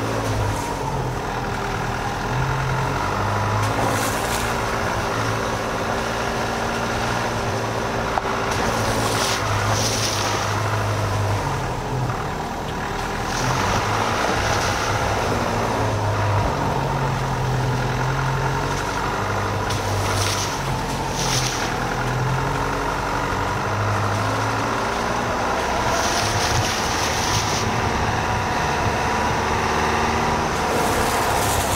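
Dacia Duster 4x4 driving slowly along a wet, rutted dirt lane: steady engine sound whose pitch shifts slightly up and down, with tyre noise and several brief splashes as it goes through puddles.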